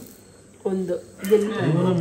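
Several people's voices talking and calling out over a board game, starting about half a second in and growing louder and more continuous after a second, with a faint steady high tone underneath.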